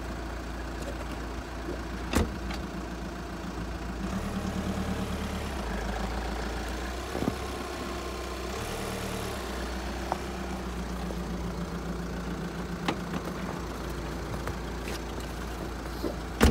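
A van's engine running, rising twice as the van creeps forward on snow with link snow chains on the front wheel, to settle the still-slack chain before it is tightened again. A few sharp clicks are heard along the way.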